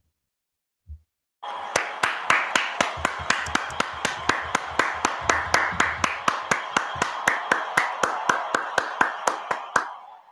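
Hands clapping steadily on a video call, about four or five claps a second, over a steady wash of further applause. The clapping starts about a second and a half in and stops right at the end.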